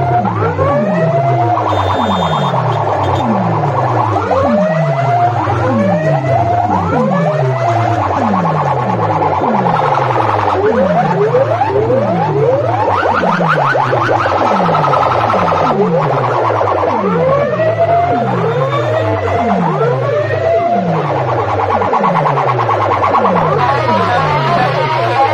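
A very loud electronic siren-like DJ competition track played through a truck-mounted rig of horn and box loudspeakers. Sliding pitch sweeps, rising and falling, repeat a little more than once a second over a steady deep bass drone.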